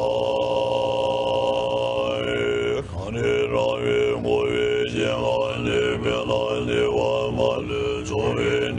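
Tibetan monks' throat singing: a deep, steady drone with a high overtone held level above it. After a short break about three seconds in, the overtone slides up and down roughly once a second.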